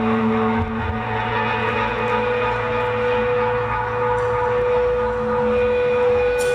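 Amplified electric guitars of a live rock band holding a steady, sustained droning chord, with no drums playing.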